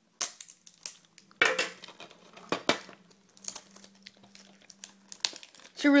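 Plastic shrink wrap on a DVD case crinkling and crackling in irregular bursts as it is handled and worked open by hand.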